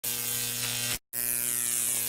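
Electric buzzing sound effect on an intro title card: a steady, harsh buzz in two stretches of about a second each, cut by a brief silent gap.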